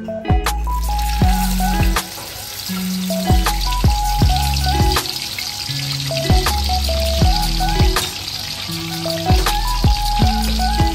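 Shelled raw peanuts frying in hot oil in a wok. A steady sizzle starts about half a second in, as they go into the oil, over louder background music.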